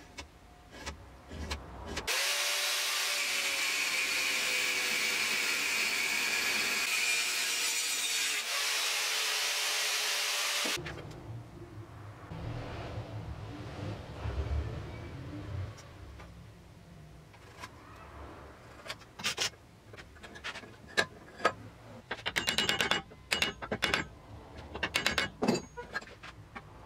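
A power tool runs steadily for about nine seconds, starting and stopping abruptly. Afterwards come soft handling sounds at a bench vise, then a quick run of sharp metal clicks and clinks as steel parts are handled.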